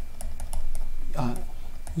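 Light clicks of a stylus tip tapping a pen tablet while writing: a quick run of small ticks in the first second and a couple more near the end, over a low steady hum.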